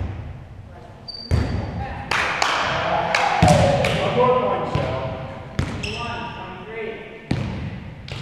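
A volleyball being struck again and again during a rally: several sharp smacks, each ringing out with a long echo in a large gymnasium. Players shout between the hits.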